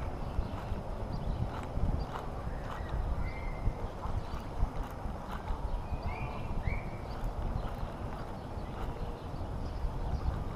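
Low rumble of handling and wind on a body-worn microphone, with irregular small knocks and clicks as a fishing rod and reel are worked. A few short, high chirps come a little after three seconds and again around six to seven seconds.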